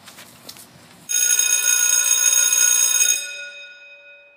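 Electric school bell ringing steadily for about two seconds after starting suddenly, then its tones ringing out and fading.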